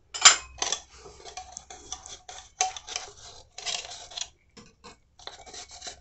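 A metal utensil scraping and rubbing around the inside of a dry calabash mate gourd in short, irregular strokes, with the sharpest scrape near the start. The strokes are spreading butter over the gourd's inner wall to seal its pores while curing it.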